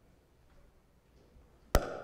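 Quiet room tone, then a single sharp knock near the end with a brief ringing tail.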